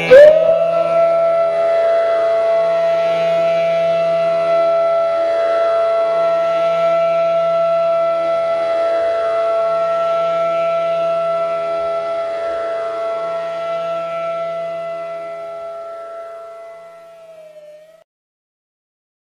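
Flute sliding up into one long held note over a soft, steady drone, as a meditative flute piece closes. The note and the drone fade out over the last few seconds.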